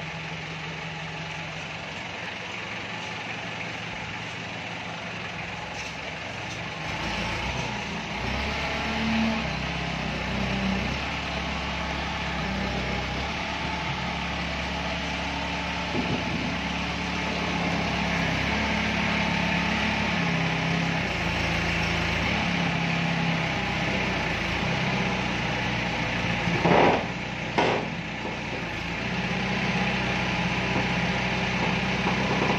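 Toyota forklift's engine running inside a steel shipping container, working harder from about a quarter of the way in. Near the end, two short loud sounds come close together.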